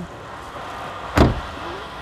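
The driver's door of a Volkswagen Polo being shut once, about a second in, a single sharp knock against a low steady background.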